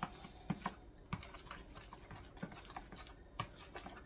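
A spoon stirring thick yogurt in a plastic bowl, making light, irregular clicks and taps against the bowl.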